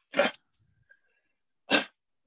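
Two short, sharp breath noises about a second and a half apart, as a person draws breath before speaking.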